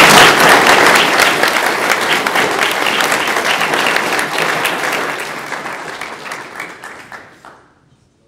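Audience applauding, a dense patter of many hands clapping, loudest at the start and dying away over the last couple of seconds.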